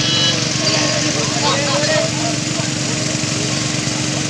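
Heavy artificial rain pouring onto a wet road, an even hiss, over the steady drone of an engine running at constant speed.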